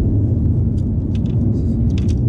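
A steady low rumble with a few faint light clicks.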